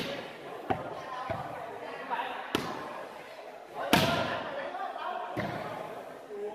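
A volleyball struck by players' hands and forearms several times in a rally, sharp slaps about a second or so apart with the loudest about four seconds in, over the steady chatter of spectators' voices.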